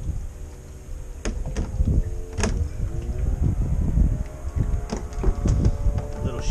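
Handling noise in a fishing kayak while a freshly caught sheepshead is unhooked: several sharp clicks and knocks, and short squeaky creaks that slide in pitch, over a low rumble.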